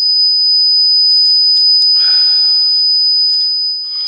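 A loud, steady, high-pitched tone held without a break or change in pitch, with a faint voice beneath it about two seconds in.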